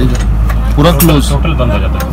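A person talking for about a second in the middle, over a steady low hum.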